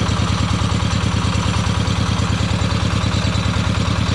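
The small engine of a bored-pile drilling rig running steadily, with a fast, even pulsing beat.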